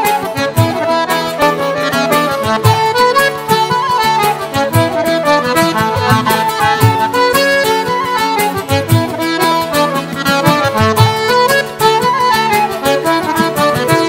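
Irish traditional ensemble playing an instrumental passage: flute and accordion carry the melody over a strummed string instrument and a steady bodhrán beat.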